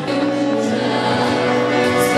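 A group of girls singing a song together, with long held notes over music.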